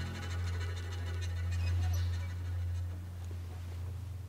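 A deep, steady bass drone from the film's score, held on as the melodic music fades out at the start, with faint scratchy rustling above it.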